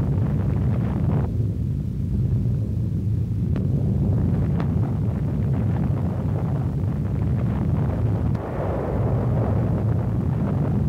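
Continuous deep rumble of an atomic bomb explosion, steady and low-pitched, with a few faint clicks over it.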